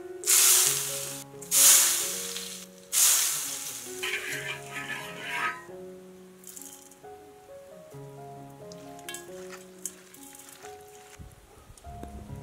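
Hot oil poured over chopped scallions, garlic and chili, sizzling loudly in three bursts in the first four seconds, then crackling and dying away, over soft background music.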